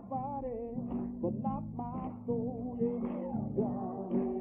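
Solo voice singing a slow, wavering melody with vibrato over guitar accompaniment.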